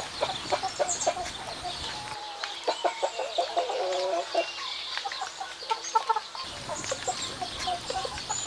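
Chickens clucking in a run of short, repeated calls, with a few small clicks among them.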